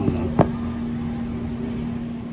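A steady machine hum, with one sharp knock about half a second in as the felt hat is handled.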